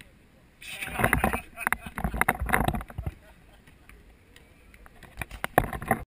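Two bursts of rumbling buffeting and knocks on the camera's microphone, the first from about half a second in to about three seconds, the second near the end.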